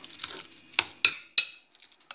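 A soft cauliflower, egg and breadcrumb mixture being mixed by hand in a glass bowl: a low stirring noise, then three sharp clinks against the glass in the middle of the clip.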